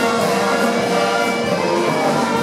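Jazz big band playing, with the saxophone and brass sections holding sustained chords together.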